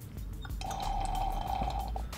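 Water sample being drawn up into a glass pipette by a rubber three-valve pipette filler bulb, with a steady high tone from about half a second in that lasts over a second.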